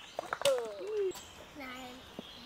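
A small child's voice and soft adult voices, without clear words, with a few short knocks near the start.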